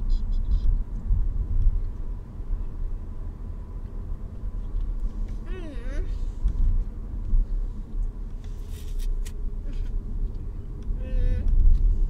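Steady low rumble of a car cabin, with short wordless vocal sounds from a child about halfway through and again near the end.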